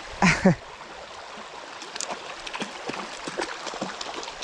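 Small creek running steadily, with faint splashes and trickling ticks. A brief burst of a person's voice comes right at the start.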